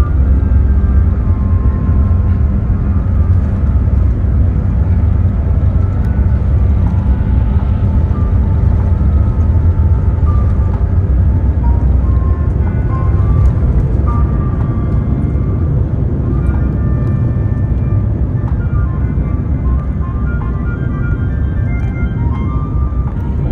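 Airbus A350-900's Rolls-Royce Trent XWB engines at takeoff thrust, a loud steady low roar with runway rumble, heard from inside the cabin. Background music plays over it.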